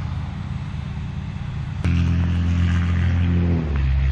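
Lawn mower engine running steadily. About two seconds in, the hum jumps louder with a click, and its pitch shifts slightly near the end.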